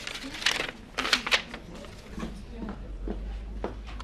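Paper rustling as a letter is unfolded, a few short crinkles in the first second and a half, then quieter handling of the sheet.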